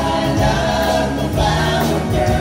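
Live pop-rock band playing, with several voices singing together in harmony over guitars, bass, drums and keyboard.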